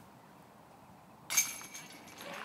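A disc hitting the metal chains of a disc golf basket about a second in: a sudden jingle of chains that rings briefly and fades, the sound of a made putt. Near silence before it.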